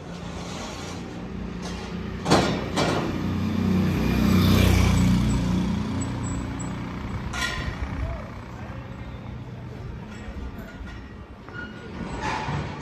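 A motor vehicle's engine passes close by on a town street, swelling to its loudest about four to five seconds in and then fading, after a sharp knock about two seconds in. A short hiss follows as the engine dies away, with street voices underneath.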